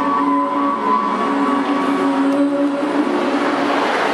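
A girl singing into a handheld microphone over a backing track, holding long steady notes.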